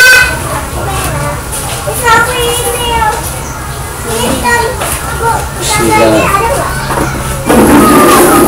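Children's voices in the background, talking and calling, over a steady low hum.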